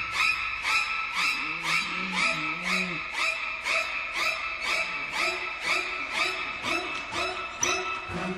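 A bird squawking over and over in distress, about two to three cries a second, as it is held in the hands, over eerie background music.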